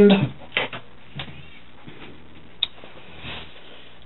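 Quiet room tone with a few faint clicks and knocks, one sharper click a little past halfway, from a handheld camera being carried through a doorway.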